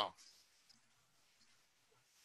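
A voice cuts off at the very start, then near silence in a small room, broken by a faint click under a second in.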